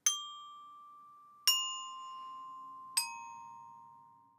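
Student bell kit (glockenspiel with metal bars) struck with mallets: three single notes, D, C, then B-flat, stepping down in pitch about one and a half seconds apart, each ringing on and fading after it is struck.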